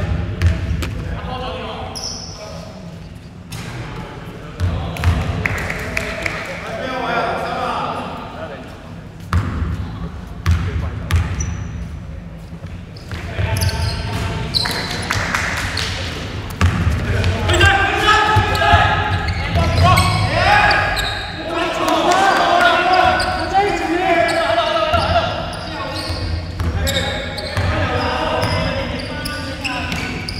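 Basketball bouncing on a hardwood sports-hall floor, with players' voices calling out in the large hall, the voices heaviest in the second half.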